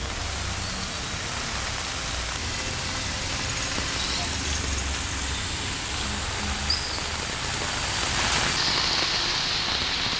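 Heavy rain falling steadily on a flooded street, with a low rumble of passing motorbikes beneath it.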